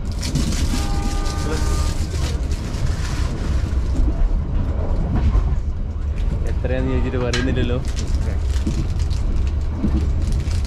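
Steady low rumble of a moving passenger train heard inside the carriage. A brief flat tone sounds about a second in, and a voice speaks briefly later on.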